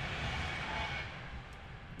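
Noise of a passing train, a steady rumble that fades away in the second half.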